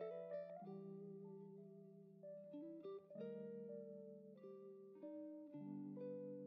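Quiet background music: a plucked guitar picking single notes over held low chords, the chord changing about every two to three seconds.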